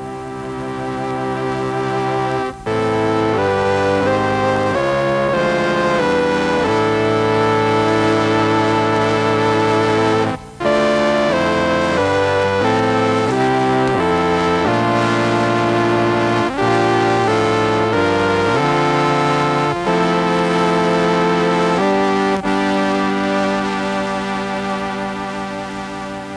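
Dubreq Stylophone 350S stylus synthesizer playing a slow piece on its full-bodied brass voice. Held notes sound together as chords, changing every second or so, with a few pitch slides. The music breaks off briefly twice, a few seconds in and about ten seconds in.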